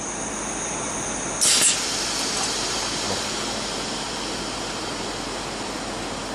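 DMG Gildemeister Twin 65 CNC lathe running a machining cycle: a steady hissing machine noise, with a brief louder hiss about a second and a half in.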